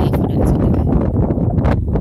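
Wind blowing across a phone's microphone: a loud, low rush of noise.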